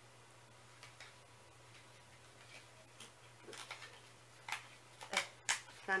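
Scattered small clicks and rustles of a perfume sample's packaging being handled and pried at while trying to open it. They are sparse at first and grow louder and closer together in the last couple of seconds, over a faint steady hum.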